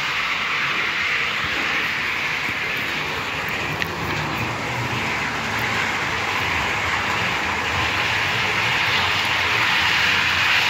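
H0-scale model trains running on the layout's track: a steady whirring of small electric motors and metal wheels on rails.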